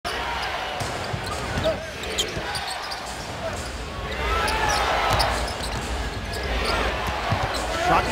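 Live arena sound of a basketball game: a basketball bouncing on the hardwood court over steady crowd noise, with voices coming in about halfway through.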